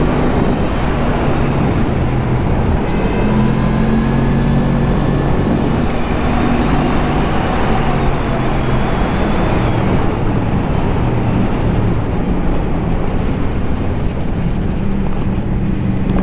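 Motorcycle engine running while riding along, its engine note stepping up and down a few times with throttle and gear changes, under a steady rush of wind noise on the helmet-camera microphone.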